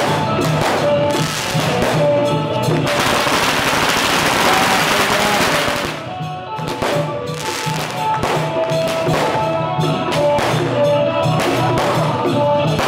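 Chinese procession band playing: drums beating a steady rhythm under a reed-horn melody. About three seconds in, a dense crackle of firecrackers covers the music for some three seconds, then the drums and horns carry on.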